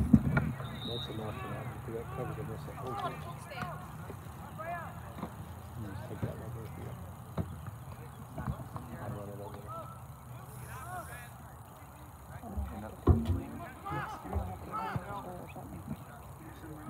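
Distant shouts and calls from players and spectators across an open soccer field, over a low rumble, with a sharp low thump at the start and another about thirteen seconds in.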